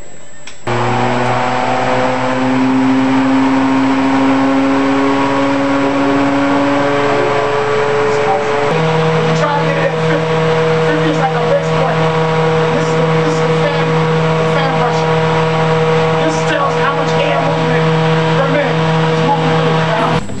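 Blower-door fan starting up about a second in and running steadily, its hum creeping up in pitch, then stepping up to a higher speed about nine seconds in and holding there: the fan is depressurizing the house for an air-leakage test.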